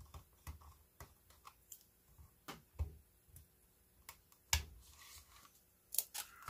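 Faint, scattered small clicks and ticks of a precision screwdriver turning a tiny screw out of the plastic case of an Aiwa portable cassette player, with a louder knock about four and a half seconds in.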